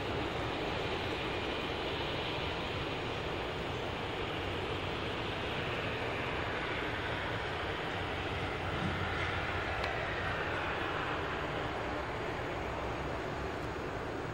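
A steady, even rushing noise without clear events or voices.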